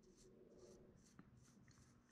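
Faint, soft brush strokes repeating a few times a second: a paintbrush wet with butane lighter fluid being worked over plastiline modelling clay to soften and smooth it.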